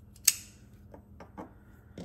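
Folding knives being handled and set down on a wooden tabletop: one sharp click about a quarter second in, then a few lighter taps.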